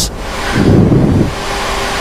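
Steady rushing flight-deck noise of a Boeing 737-800 on final approach: airflow around the cockpit and engine noise. A louder low rumble swells from about half a second in to just past one second, then it settles back to the steady rush.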